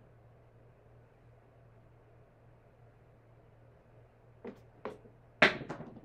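A pair of dice tossed onto a home craps table: two light clicks about four and a half seconds in, then a loud clatter as the dice strike and tumble, rattling briefly before they settle.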